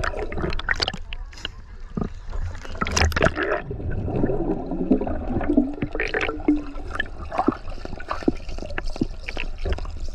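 Underwater sound picked up by a submerged action camera: gurgling bubbles from a swimmer exhaling, with many sharp crackling clicks of water. A muffled pitched tone, sliding down then holding, comes through the water from about four to six and a half seconds in.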